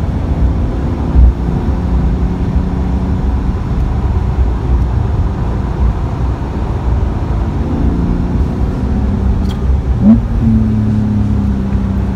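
Porsche 911 (992) flat-six engine heard from inside the cabin while driving on a racetrack, over steady road and tyre rumble. A brief thump comes about a second in, and about ten seconds in the engine note sweeps up sharply and holds higher as the car accelerates.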